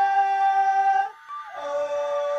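Multitracked female vocals in harmony, holding sustained notes as a chord. The chord stops about a second in and comes back on a new chord half a second later.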